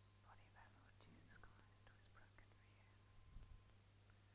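Near silence with faint, hushed voices whispering, a low thump about three and a half seconds in, and a steady low hum underneath.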